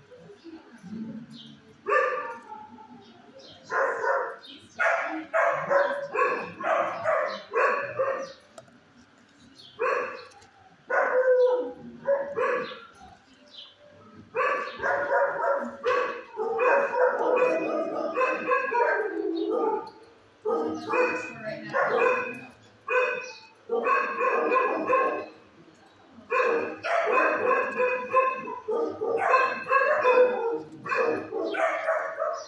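Dogs in shelter kennels barking in runs of short barks. The barking starts about two seconds in and goes on with brief pauses between the runs.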